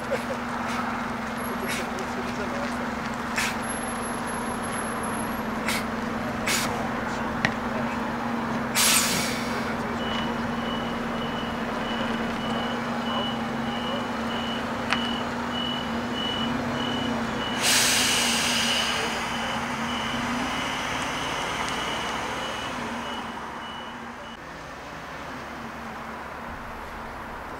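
A bus engine running slowly as the bus manoeuvres, with two sharp air-brake hisses, about nine and eighteen seconds in. From about ten seconds in until near the end, a reversing beeper sounds at about two beeps a second.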